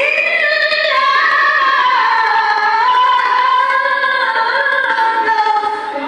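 A young woman chanting Qur'anic recitation into a microphone: one long, sustained melodic phrase with slowly gliding, ornamented pitch. It begins abruptly and dips briefly just before the end as she draws breath for the next phrase.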